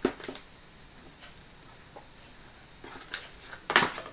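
Light handling noises: a few soft clicks and knocks as a photo frame is put down, then quiet, then a short cluster of knocks and rustles near the end as the next item is picked up.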